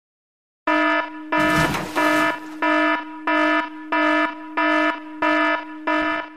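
Alarm-style warning beeps from a sound effect: a buzzy electronic tone pulsing on and off about one and a half times a second, starting just under a second in. A burst of noise sounds under the second and third beeps.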